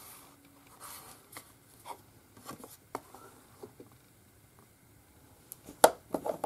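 Folded card stock being opened and handled on a cutting mat: faint scattered paper rustles and light taps, with one sharper tap just before the end.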